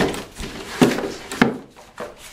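Cardboard packaging being handled as a small box is pulled out from the inserts of a shipping box: three dull knocks with cardboard scraping and rubbing between them.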